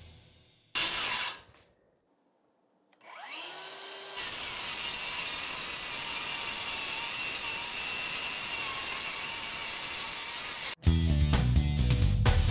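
DeWalt DCS573 brushless 7-1/4-inch circular saw on a 5.0 Ah battery, spinning up with a rising whine about three seconds in. It then cuts through two stacked sheets for about seven seconds, a steady cutting noise with a high whine under load, and cuts off suddenly. A brief burst of noise comes about a second in.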